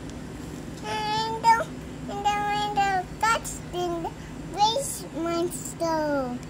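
A young child singing in a high voice: several short phrases with held notes and gliding pitch, the words not clear.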